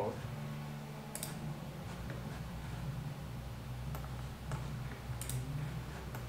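About five light, scattered clicks from someone working a laptop's controls, over a steady low hum.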